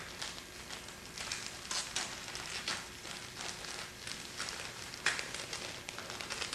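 Clear plastic vacuum-bag film crinkling in short, irregular crackles as it is worked by hand away from a foam wing.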